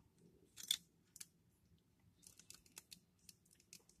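Faint clicks and ticks of hard plastic model-kit parts handled and pegged together: a snap-fit accessory's pegs pushed into holes in the figure's arm. One sharper click a little under a second in, then a run of lighter ticks in the second half.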